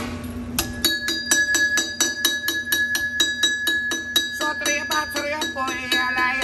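A metal bell mounted on a devil's fiddle (stumpf fiddle), struck rapidly with a drumstick at about five strikes a second, its ring holding a steady high tone. Near the end the strikes turn quicker and uneven.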